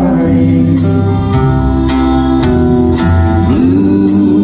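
Live band playing a slow country ballad: strummed guitar with long held notes over it and light strokes under a second apart.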